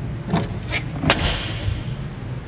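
Three short knocks, the loudest about a second in and followed by a brief rattle, over a steady low hum.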